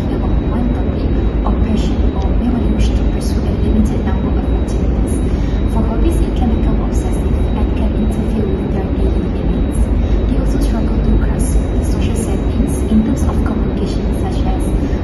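A woman speaking over a loud, steady low rumble of background noise.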